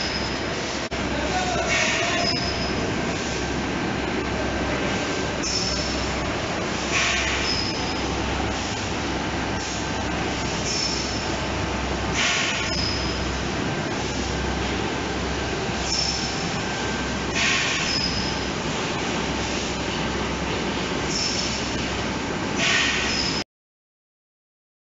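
Rotary beer filling machine of a bottling line running with PET bottles: a steady dense mechanical clatter and low hum, with a burst of hiss every few seconds and short high squeaks between them. The sound cuts off suddenly near the end.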